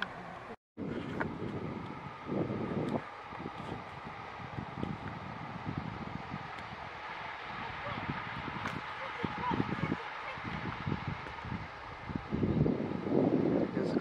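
Wind buffeting the microphone in gusty low rumbles over a faint steady hum, with a brief dropout just under a second in.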